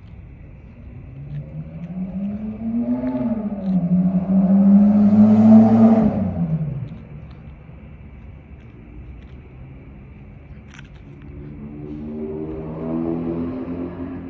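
A motor vehicle's engine passing close by. It builds up, is loudest a few seconds in, then falls in pitch and fades as it goes past. A second, fainter vehicle approaches near the end.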